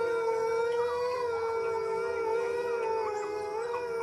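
Wolves howling: several overlapping long howls, each held at a nearly steady pitch.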